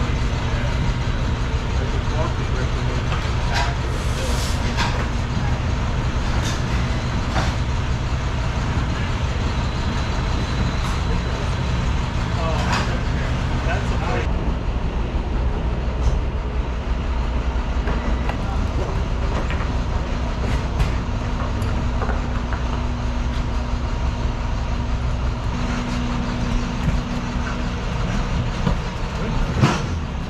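A steady low mechanical drone throughout, with scattered knocks and clunks from handling a concert grand piano as its legs and lyre are taken off.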